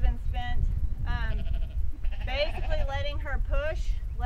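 A farm animal's wavering bleat about two seconds in, among other short pitched calls, over wind rumble on the microphone.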